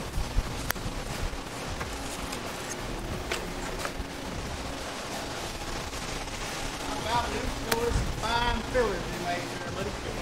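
Shop background noise with a few sharp metallic clicks and knocks, as steel parts are handled and fitted under the car. A voice talks faintly from about seven seconds in.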